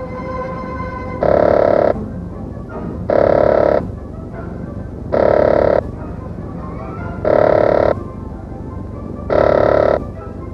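Pneumatic rivet gun driving rivets into a metal aircraft skin panel: five short bursts of rapid hammering, about two seconds apart.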